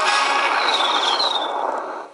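Clash of Clans game audio from the phone's speaker as the game loads: a loud, sudden rushing noise with a brief high whistle-like glide partway through, fading near the end.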